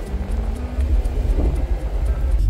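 A vehicle driving, heard from inside its cabin: a steady, loud low rumble of engine and road noise.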